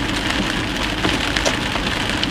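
Rain on the car and tyres hissing on the wet road, heard inside the cabin of a moving car, with a steady low road rumble underneath and a few faint ticks of drops.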